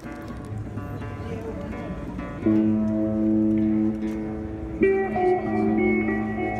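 Acoustic guitar being played: soft picked notes at first, then louder chords ringing out about two and a half seconds in and again near the end.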